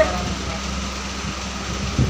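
A steady low mechanical hum, like a running fan or motor, with no other clear event.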